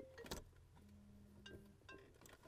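Near silence, with a faint click about a third of a second in and a couple of softer ticks later: fingers handling a small plastic fiber-optic connector and lifting its locking tabs.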